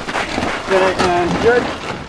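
Indistinct talking by people standing close by, with a rushing outdoor background noise under it. No words come through clearly.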